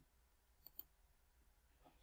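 Near silence broken by two faint computer-mouse clicks in quick succession, as the presentation advances to the next slide.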